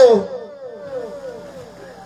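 A man's voice through a microphone and PA system ending a word, followed by an echo that repeats its falling tone several times at short even spacing and fades out.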